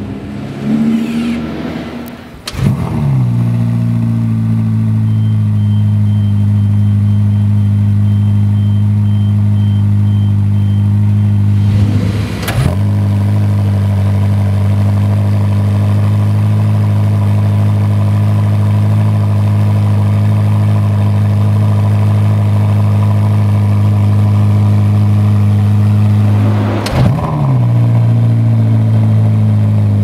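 Ferrari SF90's twin-turbo V8 idling steadily. Three times, about 2 s in, midway and near the end, there is a start-up flare that drops back into idle.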